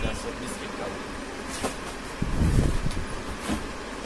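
Cardboard saree boxes and plastic-wrapped packets being handled and shifted, with a few short crinkles and a louder scuffing shuffle a little past halfway, over a steady low background rumble.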